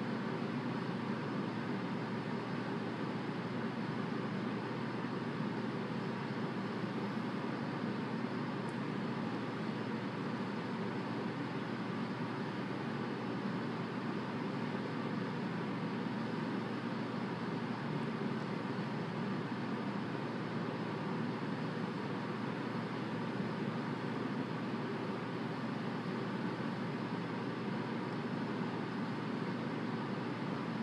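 Steady, even hum of distant road traffic.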